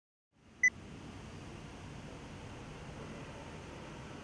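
A single short, high countdown-leader beep about half a second in, then a steady outdoor background hiss and low rumble that fades in and holds.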